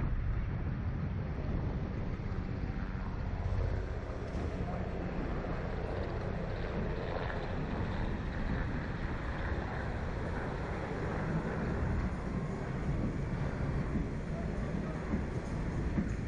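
Wind buffeting the microphone of a camera mounted on a swinging Slingshot reverse-bungee ride capsule: a steady low rumble.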